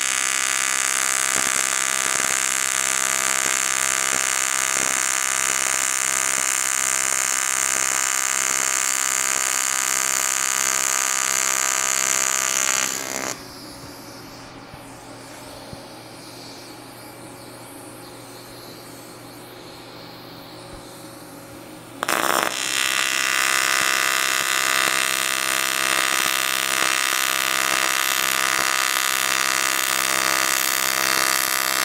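AC TIG welding arc on aluminum buzzing steadily, then cutting off a little under halfway through. After a quieter gap the arc is struck again sharply, about three-quarters of the way in, and buzzes on steadily.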